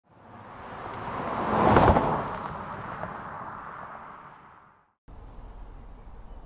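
Intro whoosh sound effect that swells to a peak with a sharp hit about two seconds in, then fades away over the next few seconds. After a moment of silence, steady outdoor background noise cuts in near the end.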